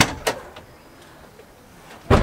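A car door or lid shutting with a sharp slam, followed a quarter second later by a second, lighter knock, then only faint background.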